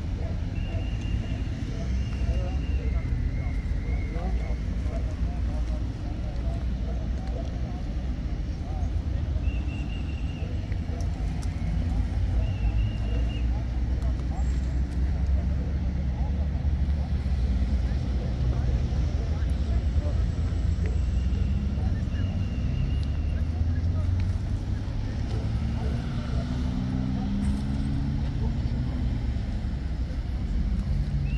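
Roadside ambience: a steady low rumble of vehicle engines and passing road traffic, with people's voices in the background and short high-pitched tones that recur every few seconds.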